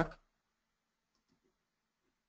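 Faint computer mouse clicks, two close together about a second in, over near silence.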